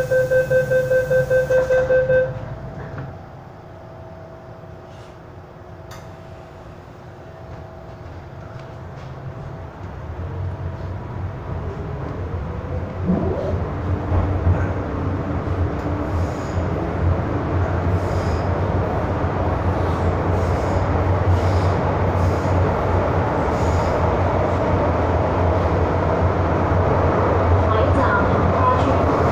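MTR M-Train door-closing chime beeping rapidly for about two seconds, then the train pulling out, its running noise building steadily louder as it picks up speed.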